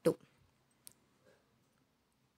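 Near silence broken by one short, light metallic click about a second in, from a steel spoon moving fried omelette bondas from a cast-iron paniyaram pan onto a steel plate.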